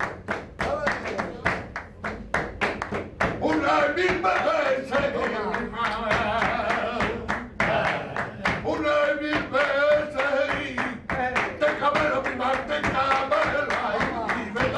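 Flamenco palmas: several men clapping their hands in a quick, even rhythm. From about three seconds in, a man's voice sings flamenco cante over the clapping.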